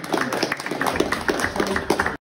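A small group of people clapping by hand, with a few voices mixed in.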